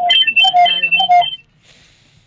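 Telephone-line electronic tones: a quick, repeating pattern of high beeps over the studio phone line, the sign of the caller's call dropping. They stop suddenly about a second and a half in.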